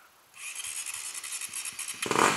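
Enduro motorcycle engine idling, heard faintly as a steady high-pitched ticking hiss that comes in about a third of a second in after a brief near-silence.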